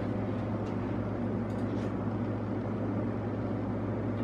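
Steady low mechanical hum with an even hiss over it, unchanging throughout, as from a kitchen fan or motor running.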